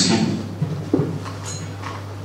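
Handling noise of a handheld microphone being passed from hand to hand, with a knock about a second in and a steady low hum underneath.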